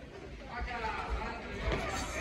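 Several voices calling out and shouting in a large hall, louder from about half a second in, with a few dull thuds mixed in.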